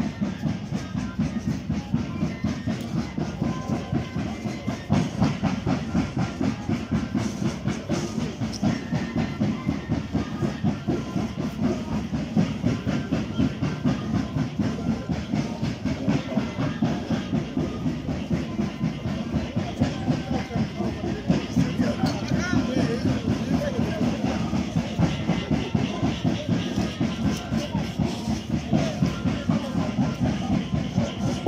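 Live moseñada band music: breathy cane moseño flutes over a fast, steady drum beat, played for the dancers.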